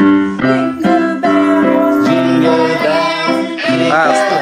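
Digital piano playing a Christmas carol in steady, held chords.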